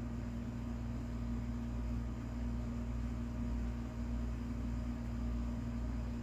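A steady, unchanging low hum with a constant tone, like a running appliance or motor.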